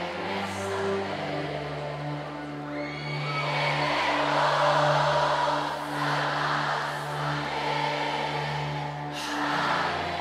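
Live band music played through a concert PA: an instrumental stretch without lead vocals, with held low bass notes that change about once a second under a dense wash of higher sound.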